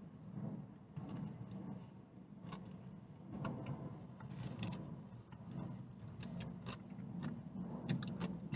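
Quiet eating sounds: a man chewing a burger, with a few brief sharp crackles and small clicks from handling it, over a low steady hum inside a car.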